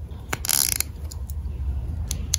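Small textured plastic toy hedge pieces clicking and scraping against each other in the hands: a sharp click, then a short rasping scrape, then a couple of light ticks.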